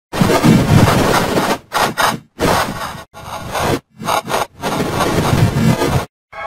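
The DyDo logo's audio run through a heavy distortion effect, coming out as a harsh, noisy, choppy blare that cuts out briefly about five times.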